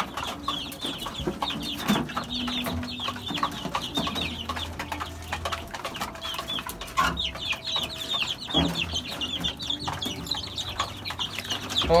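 A brood of chicks peeping constantly, in many rapid, short, high falling chirps, while they feed. Scattered light clicks sound among the peeps.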